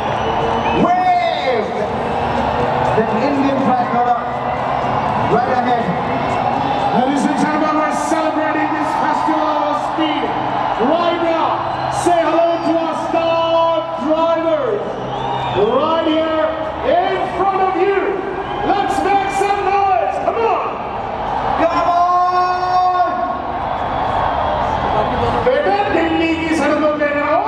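A man's voice calling out loudly in long, drawn-out phrases, with crowd noise beneath.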